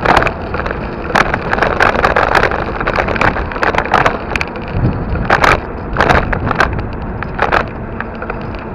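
Riding noise from a camera mounted on a moving vehicle: steady wind and road rush, broken by frequent sharp, irregular bumps and rattles.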